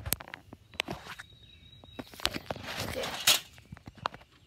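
Footsteps and rustling in leaves and brush, with scattered small snaps and knocks of handling, and a louder sharp crackle near the end.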